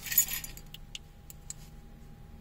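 A brief metallic jingle, like keys, then a few light clicks as the vehicle's lights are switched over, with a faint steady hum from the idling vehicle.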